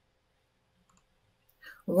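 Dead silence for about a second and a half, then a short click, and a woman starts speaking at the very end.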